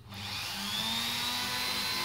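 Dremel rotary tool with a pen-style engraving attachment running, its high whine rising in pitch over the first second as it spins up, then holding steady.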